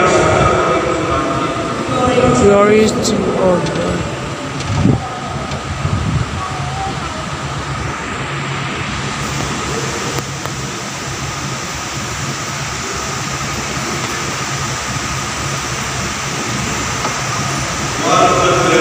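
Steady hum and low murmur of a crowded church hall, with a voice heard briefly in the first few seconds.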